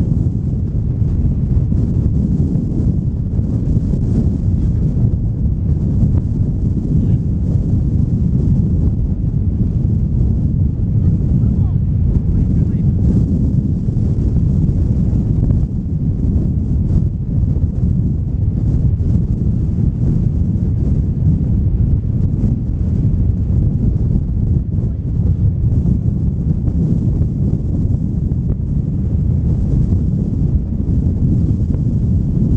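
Strong wind buffeting the microphone: a loud, steady low rumble that drowns out other sound.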